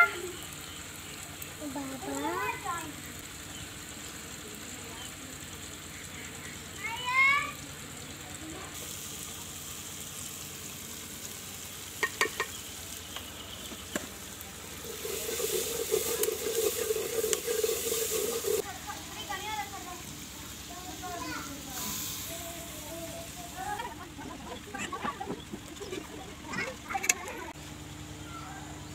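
Spiced masala frying in an aluminium pot over a wood fire and being stirred with a steel ladle, with a louder few seconds of stirring and sizzling midway. A few short clicks and brief voices come and go.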